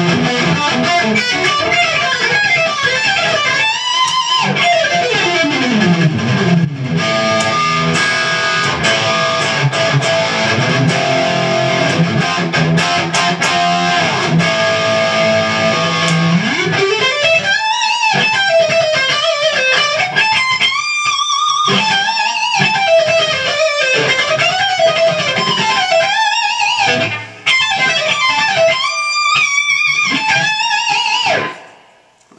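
Carvin CT-6 electric guitar played through a distorted Marshall JVM 210H tube head and Marshall 1960A 4x12 cabinet: fast rock lead runs and held notes, then, from about halfway, single-note lead lines with wide bends and vibrato. The lead tone is screaming and the low end tight. It breaks off briefly a few seconds before the end.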